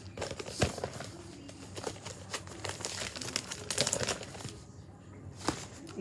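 Clear plastic sleeve pages of a trading-card binder crinkling and rustling as they are handled and turned, with scattered sharp clicks and taps.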